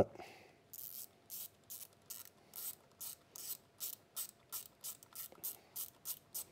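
A ratcheting hand driver clicking as it turns a Ruger 10/22's action screw down. The clicks start under a second in and run evenly at about three a second.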